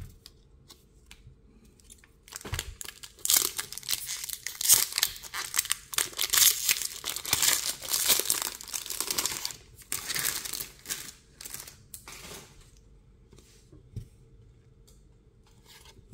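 Foil wrapper of a Pokémon trading card booster pack being opened by hand: after a quiet start, a long spell of crinkling and tearing begins about two and a half seconds in and dies away about ten seconds later. A single click follows near the end.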